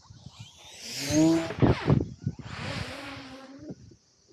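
Electric RC plane (E-flite Turbo Timber Evo) passing low over the camera. The motor and propeller whine builds, peaks with a loud rush about a second and a half in as it goes overhead, then fades away.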